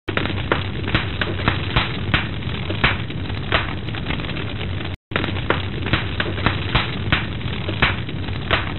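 Intro sound effect: a steady noisy rumble with frequent irregular sharp pops and crackles. It cuts out briefly about five seconds in and then restarts as the same loop.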